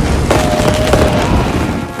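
Fireworks crackling in a run of sharp cracks over music.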